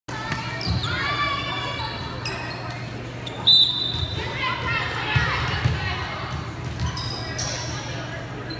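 Volleyballs thudding on a hardwood gym floor and being hit, with sneaker squeaks, echoing in a large gym. A brief high-pitched squeal about three and a half seconds in is the loudest sound.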